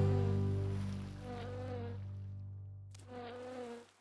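A held music chord fading out, with a short wavering insect-like buzz twice, about a second and a half in and again about three seconds in, before the sound cuts off just before the end.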